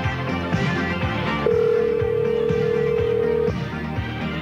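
A song playing, with a telephone ringback tone sounding once over it for about two seconds, starting about a second and a half in. It is an outgoing call to a radio station's request line, still ringing unanswered.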